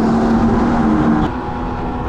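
Go-kart running at speed, heard from the onboard camera: a steady motor hum that drops away and gets quieter just over a second in.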